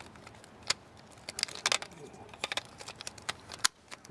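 Hard plastic parts of a Bandai MagiKing combiner toy clicking and tapping against each other as the folded Magi Phoenix piece is worked into place as the robot's chest: a scattered run of short, sharp clicks.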